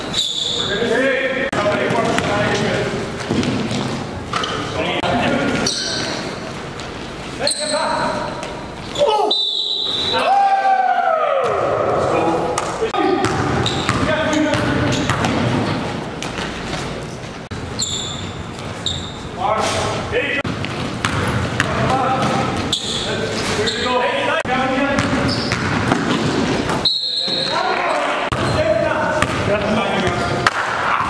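Live basketball game sound in a gym: a basketball bouncing on the hardwood court, with players' indistinct voices calling out and echoing in the hall.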